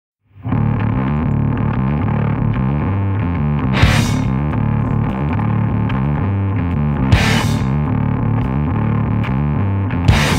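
Stoner rock intro: a heavily distorted, low, repeating riff starts about half a second in. Two bright crashes ring out over it, near four seconds and near seven seconds.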